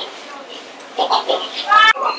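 A woman singing in a high voice, ending in a loud rising note near the end.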